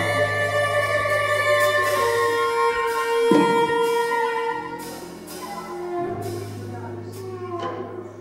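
Free-improvised ensemble music: several instruments, including a harmonica and a soprano saxophone, sustain overlapping held notes over a low drone. A single sharp strike comes about three seconds in, and the sound eases off after the halfway point.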